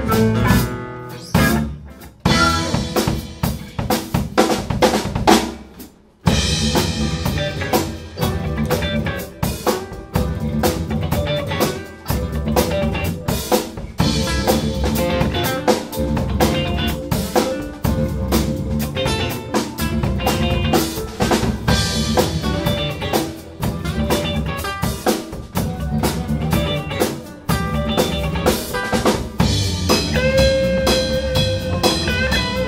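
Live instrumental band music: drum kit with snare, rimshots and bass drum over electric bass and electric guitar, with flute joining. The opening seconds are stop-start ensemble hits with short breaks, and from about six seconds in the band settles into a steady full groove.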